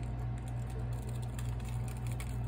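Holographic transfer foil sheet being peeled off heat-laminated cardstock, faint crackling with a few small ticks, over the steady hum of an air conditioner.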